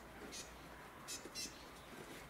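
Birds chirping faintly in the background: three short, high chirps.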